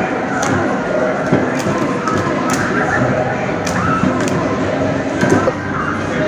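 Busy arcade din, a steady mix of game-machine sounds and background voices, with about seven sharp knocks at uneven intervals.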